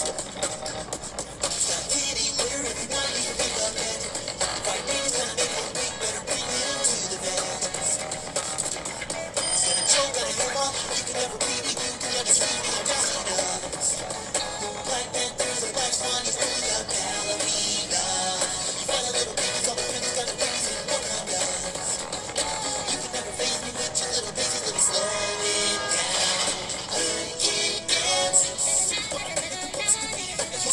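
Beatboxing with a backing beat: a cartoon character's vocal beatbox round, continuous and without words.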